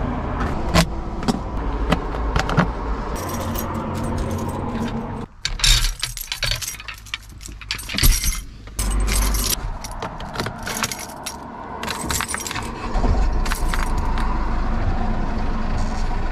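Metal rattling and clinking from a steering-wheel lock and its keys being handled, over a steady low hum.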